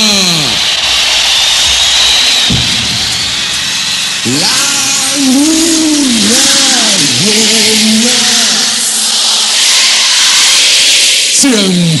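Electronic DJ-intro sound effects. A voice-like tone drops steeply in pitch at the start, then comes a rushing noise sweep with a low boom about two and a half seconds in. From about four to eight seconds a warbling, pitch-bending synthetic voice sounds over a high hiss that swells and fades.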